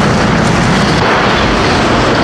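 Loud, dense, steady wall of distorted noise from a 1992 funk-metal album recording, with no clear beat and no voice.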